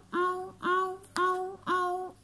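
A child's voice imitating a railway level-crossing warning bell: a steady run of short, identical sung notes, about two a second, each sliding quickly up to the same pitch.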